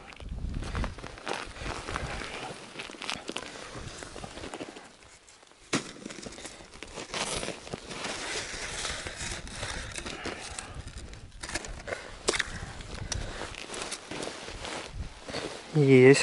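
Rustling, crackling handling noise with scattered sharp clicks as fishing line is hauled in by hand through a hole in the ice, with a hooked zander on the tip-up line.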